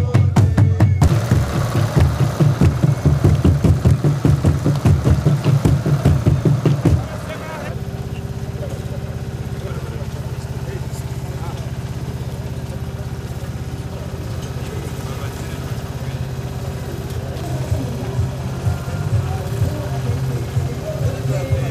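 Music with a steady drum beat for the first seven seconds, then it cuts to an engine of road-works machinery running steadily, with a crowd's voices over it.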